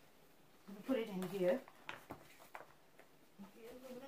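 A few light clicks and knocks, about two seconds in, as an aluminium foil baking pan is set onto an open oven's wire rack, with a short spoken "okay" just before.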